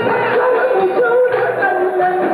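A woman singing an Azerbaijani song with a wavering, ornamented vocal line, over a live band with accordion and frame drum.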